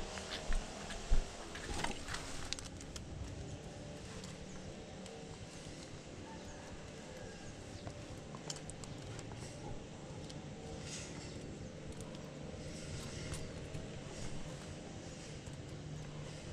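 A few sharp knocks and steps in the first couple of seconds, then a low, steady outdoor background with faint scattered ticks and rustles as a thin fibre-optic drop cable is handled against a wall.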